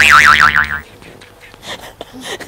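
Cartoon 'boing' sound effect: a twanging tone that swoops up and then wobbles rapidly, cutting off suddenly just under a second in.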